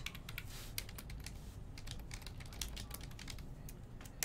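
Typing on a computer keyboard: a run of quick, irregular key clicks as a name is entered.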